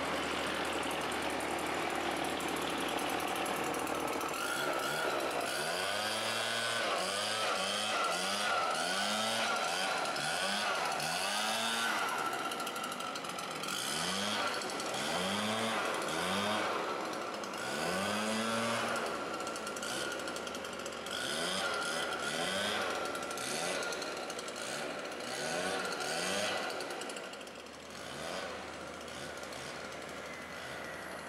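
Chainsaw revved in quick, repeated throttle blips, its pitch rising and falling with each one, over a steady hum of heavy machinery and traffic. The revving starts a few seconds in and stops near the end.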